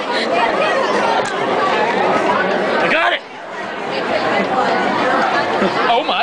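Lunchroom crowd chatter: many students' voices talking over one another in a large room, dipping briefly about halfway through.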